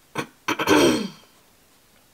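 A woman coughs twice: a short catch about a fifth of a second in, then a louder cough about half a second in that trails off in a falling vocal tone by just over a second.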